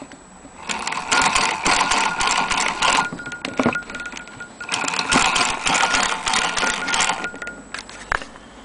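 Antique Victorian Royal Sewing Machine Company 'Shakespeare' sewing machine stitching through denim, its mechanism running in two bursts of rapid clicking of about two and a half seconds each, with a short pause between.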